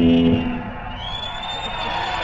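Live rock concert recording: a loud held low note from the band cuts off about half a second in, leaving a cheering crowd. A high, steady whistle-like tone comes in about a second in and holds.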